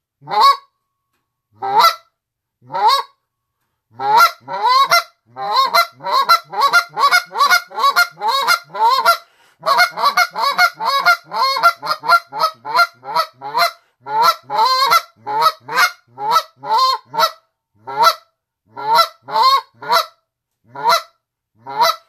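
Reed goose call blown in slow goose rhythm, moans and clucks with each note clean and breaking sharply upward in pitch. A few single notes about a second apart build into a quick run of clucks for several seconds, then ease back to evenly spaced single notes near the end.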